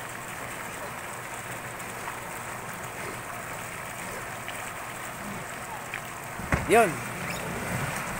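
Steady rush of churned pool water. About six and a half seconds in comes a sudden low thump, followed by a hiss of gas as a six-person canister life raft bursts open and starts to inflate, with a short shout over it.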